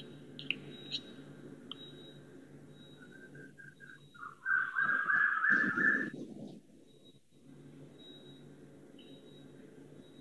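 Faint room hum through an open video-call microphone, with a few sharp clicks in the first second. A high, steady whistle-like tone sounds briefly in the middle, about two seconds at its loudest, then cuts off.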